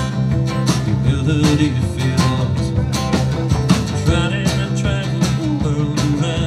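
Live country-rock band playing the instrumental opening of a song: acoustic and electric guitars over a steady drum beat.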